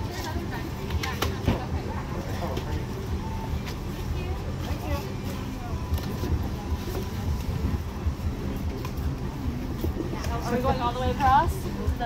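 Busy city-sidewalk ambience: a steady low rumble of street traffic under the chatter of people nearby, with one voice louder about ten seconds in.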